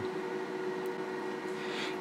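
Steady background hum of equipment running in the room, with a few constant tones over a light hiss.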